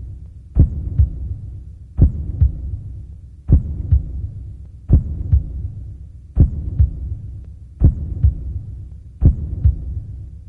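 A slow heartbeat sound: seven low double thumps, the second of each pair weaker, about one pair every second and a half, over a low hum.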